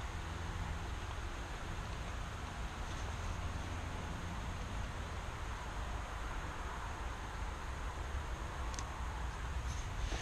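Steady outdoor background noise: a low rumble under an even hiss, with a couple of faint clicks near the end.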